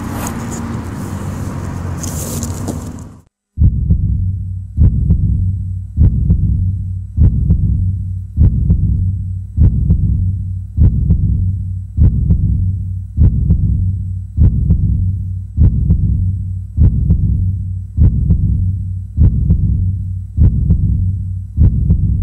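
A noisy rush that cuts off suddenly about three seconds in. It is followed by a slow heartbeat sound effect: a low thump a little more than once a second, each fading away, over a low hum.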